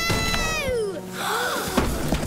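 Cartoon soundtrack: a long, falling, wailing tone over the first second, a shorter rising-and-falling tone a moment later, then a sharp crash near the end as a cardboard collage falls and breaks on the floor.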